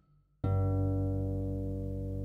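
Dusty Strings FH36S lever harp, tuned to A=432 Hz. After a split second of silence, a low chord is plucked about half a second in and rings on, the bass strings sounding strongly as the notes slowly fade.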